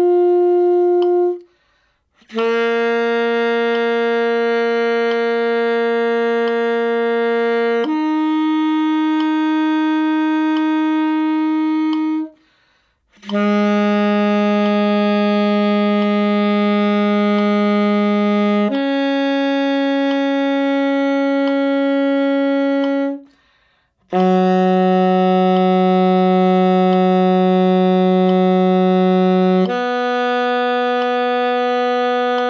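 Alto saxophone playing a slow interval exercise in fourths and fifths: long, evenly held notes of about five seconds each, in pairs where the second note is higher, each new pair starting lower. There are short breath pauses between the pairs.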